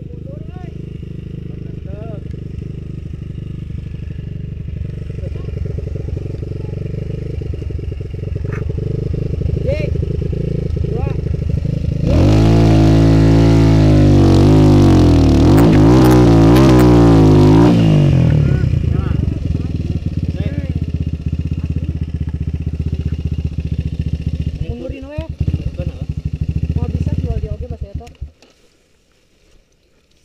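Dirt bike engine running while the bike is stuck in a muddy rut, revved hard for about six seconds midway, its pitch rising and falling, before settling back to a steady run and cutting away near the end. Short calls from the riders come faintly over it.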